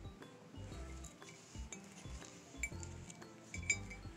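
Ceramic Rae Dunn mug and its slipper-topped lid clinking a few times, the sharpest clinks about two and a half and three and a half seconds in, over quiet background music with a steady beat.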